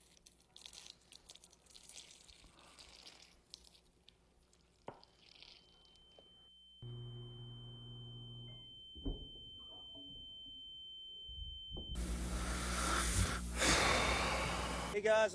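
Microwave oven sounds: faint clatter and a click, then a steady high whine. About seven seconds in, a low electrical hum starts suddenly, runs for a couple of seconds and winds down. Near the end a loud hiss takes over.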